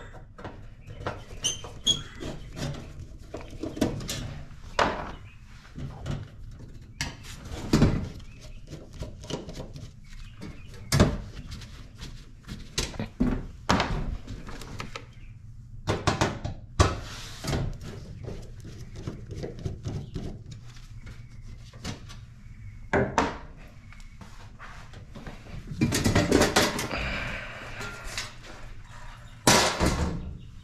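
Metal breaker panel cover being unscrewed with a screwdriver and handled: irregular knocks, clicks and clanks, with a longer burst of scraping noise about 26 seconds in.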